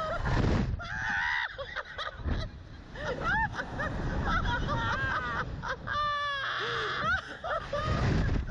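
Two riders laughing and shrieking on a slingshot ride, with short high squeals and a quick run of laughter about six seconds in, over wind rumbling on the microphone.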